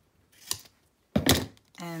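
A light tap, then one sharp knock about a second in, as craft materials are handled on a tabletop.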